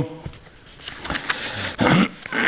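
A man's pause in speech: a few faint clicks, then a short, loud, sharp intake of breath near the end.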